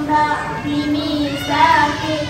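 A schoolgirl singing into a handheld microphone, her voice amplified, in long held notes.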